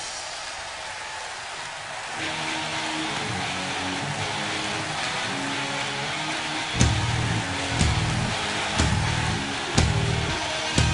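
Heavy rock band playing live, an instrumental stretch with no vocals. Sustained guitar notes come in about two seconds in, and from about seven seconds in the full band joins with heavy hits roughly once a second.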